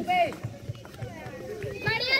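Young men shouting short calls during a kho kho game, one loud falling call right at the start, with footfalls of running players on sandy ground.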